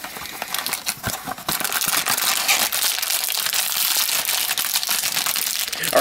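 Cardboard blind box being opened, with a few sharp clicks and taps of the flaps, then a foil bag crinkling steadily as it is opened and the vinyl mini figure unwrapped.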